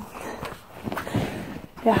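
A notebook being closed and moved about in the hands: rustling, with a few soft knocks in the middle.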